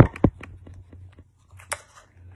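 Handling noise as a rubber balloon is stretched over the cut-off neck of a plastic bottle: two sharp knocks at the start, then light scattered clicks and taps, and one more click near the end.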